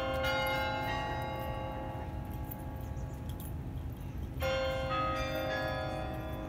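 Sather Tower's carillon bells ringing at noon: several bells of different pitches struck in a short group near the start, their ringing fading slowly, then another group struck about four and a half seconds in.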